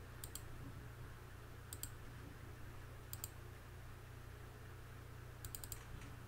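Computer mouse button clicking quietly: three quick double clicks about a second and a half apart, then a fast run of four clicks near the end, over a steady low hum.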